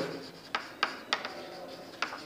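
Chalk writing on a chalkboard: three sharp taps of the chalk about a third of a second apart, with faint scratching between strokes.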